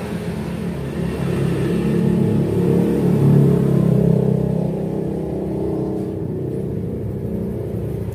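A motor vehicle engine running, with a low steady hum that grows louder toward the middle and then eases off.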